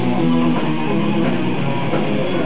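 Heavy metal band playing live: electric guitar over bass and drums, loud and continuous.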